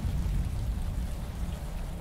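Steady rain in a film soundtrack, with a low rumble beneath it.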